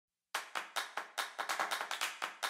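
A run of hand claps starting just after a moment of silence, about four or five a second at first, then quickening into a fast roll, like the clap build-up at the start of an electronic intro track.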